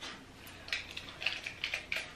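Light plastic clicks and rattles from a ring light's phone-holder clamp being handled and fitted, several small clicks in quick succession from about half a second in.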